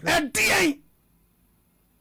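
A voice crying out "Papa!" in a loud, breathy shout within the first second, then near silence.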